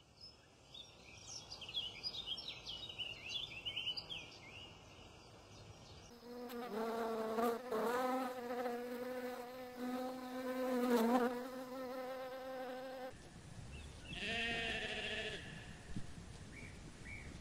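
A rapid run of high chirping calls, then a bee buzzing at a flower: a steady hum with small wobbles in pitch, the loudest part, lasting about seven seconds. Near the end, sheep bleat.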